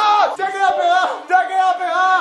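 Young men yelling in a string of long, loud shouts.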